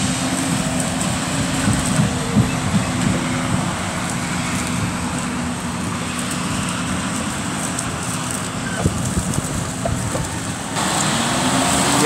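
John Deere 6250R tractor driving past over maize stubble pulling a trailer, its engine running with a steady drone.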